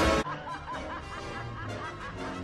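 A cartoon villain's quick, repeated cackling laugh over orchestral film music. A louder passage cuts off suddenly just before the laugh begins.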